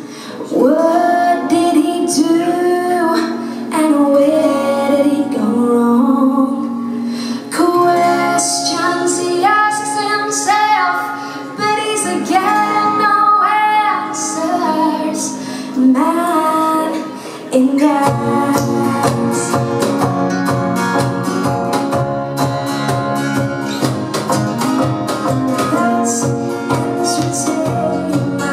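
Live acoustic band music: a woman sings over acoustic guitar, keyboard, cajon and electric guitar. About two-thirds of the way through the singing stops and the band plays on with a fuller low end.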